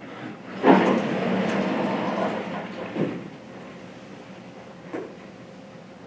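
A vertical sliding chalkboard panel rumbles along its track for about two seconds, starting with a knock. Lighter knocks follow twice.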